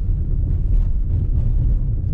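Tyres and suspension of an SUV, most likely a Toyota Highlander hybrid, rolling over a rough dirt track, heard inside the cabin as a steady low rumble with no clear breaks or knocks.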